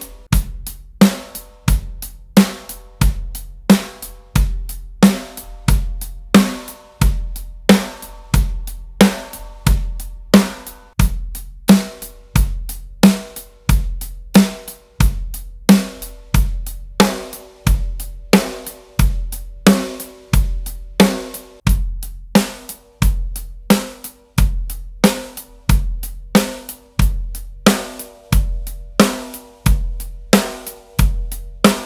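A drum kit plays a steady, even groove of kick drum, snare, hi-hat and cymbals, with the shallow snare ringing on each backbeat. The snares are swapped in turn during the groove, among them a Keplinger Black Iron 14x4 and a Noble & Cooley SS Classic Maple 14x3.87, all tuned alike.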